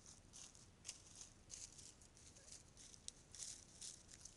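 Faint, irregular rustling and crunching of dry fallen leaves as wild turkeys step and forage through them, several short scuffs a second.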